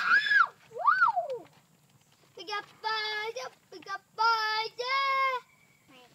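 A child's high voice: a short excited squeal, a sliding whoop rising and falling, then a run of held, sung notes.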